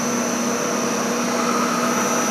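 Eiger Mini Motor Mill M250 bead mill running, its 3 hp explosion-proof electric motor spinning the agitator: a steady whir with a low hum and a constant high whine.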